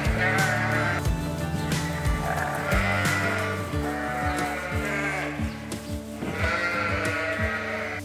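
Several sheep bleating again and again, with calls about every second or two, over background music with a steady beat.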